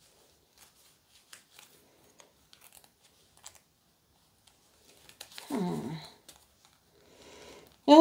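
Faint, scattered clicks and scrapes of a hand tool working inside a vinyl reborn doll part, trying to grip something lodged in it. About five and a half seconds in, a woman makes a short vocal sound that falls in pitch.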